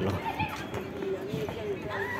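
A faint, wavering voice in the background over steady street hum.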